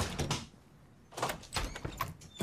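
Interior door clicking and knocking: a sharp click at the start with a few knocks just after, then another cluster of knocks a little over a second in.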